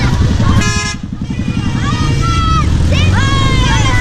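Motorcycle engine running at low road speed, with a single short horn toot a little over half a second in. High-pitched shouts and cheers from children follow from about two seconds in.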